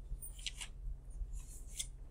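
Sheets of paper rustling in a few short, crisp bursts as they are leafed through in a search for a test, over a steady low hum.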